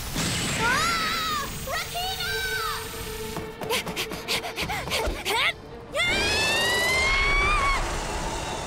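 Cartoon battle soundtrack: wordless shouts and cries from animated characters over action music and sound effects, with a run of sharp impacts mid-way and one long drawn-out shout near the end.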